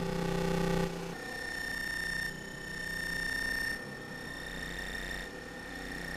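Modular synthesizer patch sounding layered, steady electronic tones that jump abruptly to new pitches about every second and a half. This is a stepped sequence of the kind a shift-register CV generator makes.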